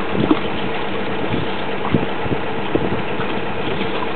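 Engine of a geotechnical drilling rig running steadily, with a few short knocks: about a third of a second in, near two seconds and near three seconds.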